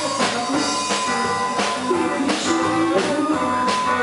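Live rock band playing an instrumental passage between sung lines: drum kit with repeated cymbal and snare hits under guitar.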